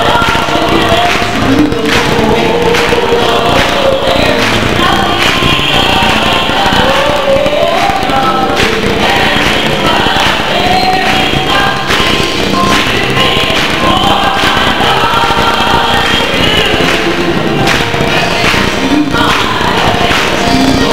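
Gospel choir singing with a female soloist leading, accompanied by hand clapping.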